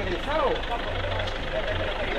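Low engine hum of a vehicle idling nearby, swelling and fading, under a few words of men talking.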